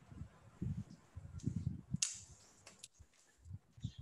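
A microphone being handled and swapped over a video call: a run of muffled low bumps and rubbing, with a sharp click about two seconds in and a few lighter clicks just after.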